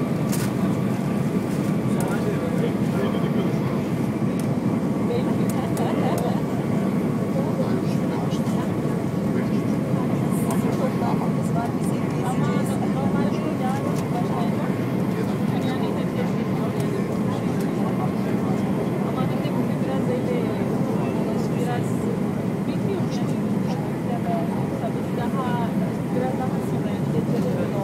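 Steady cabin noise inside an Airbus A320 on descent: the roar of airflow and engines, with a faint steady tone above it. Passengers' voices murmur in the background.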